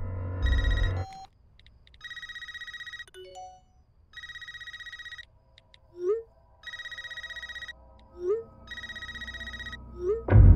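A cordless landline phone rings with a trilling electronic ring, in bursts of about a second every two seconds. Between the rings come short rising electronic blips from a smartphone's text messages; the two blips about six and eight seconds in are the loudest sounds.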